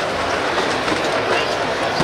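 Ice cubes rattling and clattering steadily as they are scooped out of an ice bin.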